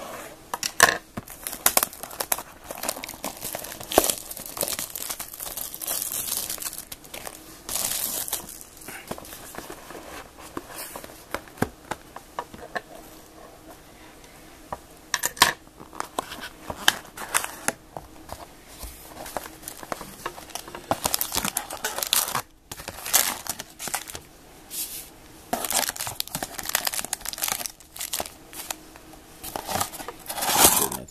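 Plastic wrapping being torn and crinkled off a trading-card box as it is opened, in irregular bursts of crackling and tearing with a quieter pause about midway.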